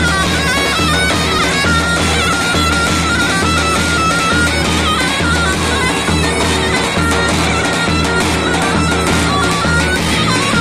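Loud folk dance music: a shrill, reedy wind melody with quick ornamented turns over a steady drum beat, played for a linked line dance.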